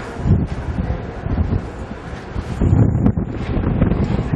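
Wind buffeting the camcorder microphone: an uneven low rumble that rises and falls in gusts, loudest a little before three seconds in.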